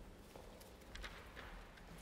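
Faint hall quiet broken by a few light clicks from high-heeled footsteps on the wooden stage floor and the handling of sheet music at the piano.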